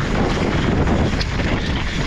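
Wind rushing over the microphone with the rumble of mountain bike tyres rolling fast over loose, dry dirt, steady and loud with a few sharp knocks from the bike over bumps.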